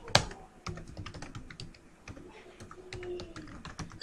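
Typing on a computer keyboard: an irregular run of key clicks, with one louder keystroke just after the start.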